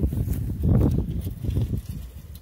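Close handling noise: irregular low knocks and rustling as a hand touches and moves among aluminium drink cans standing in the grass, fading near the end.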